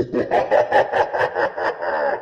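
A person laughing in quick repeated bursts, about six a second, sounding muffled with the highs cut away.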